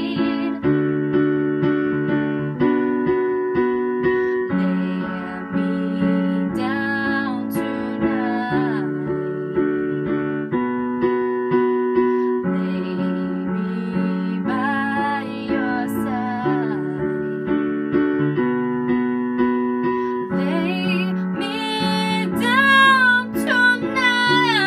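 A woman singing a slow soul ballad to her own digital piano accompaniment. Held chords change about every two seconds. Her voice comes in for sustained phrases with vibrato and is loudest and highest near the end.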